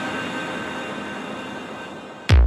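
A sustained synthesizer chord, a drone of several steady tones over a haze of noise, slowly fading away.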